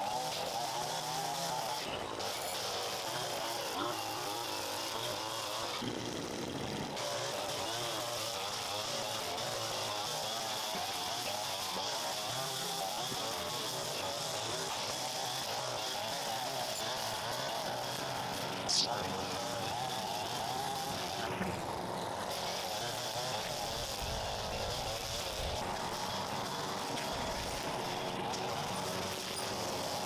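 String trimmer running steadily while cutting grass, in several short clips joined together, with one sharp tick a little past the middle.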